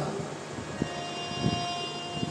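Harmonium holding one steady note that comes in about a second in, with a few soft low thumps under it.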